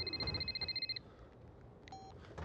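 Telephone ringing: one electronic trilling ring, a rapidly pulsing high tone lasting about a second, followed near the end by the faint start of a short second tone.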